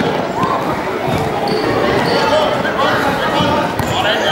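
A football kicked and bouncing on a wooden sports-hall floor, over continuous chatter from spectators.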